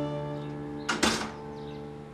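An apartment front door pushed shut by hand, closing with a quick double knock about a second in, over soft background music.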